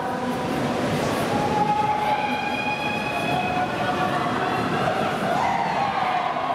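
Steady noisy din of a busy indoor riding arena: ponies moving on sand and spectators, with a long drawn-out call held from about one to four seconds in.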